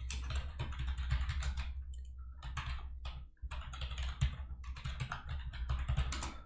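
Typing on a computer keyboard: quick, irregular keystrokes with a short pause about three and a half seconds in.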